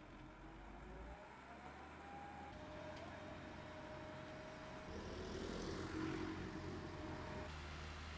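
Heavy construction machinery running: a steady engine hum with a thin whine that rises over the first two seconds and then holds steady. The sound grows louder and fuller about five seconds in.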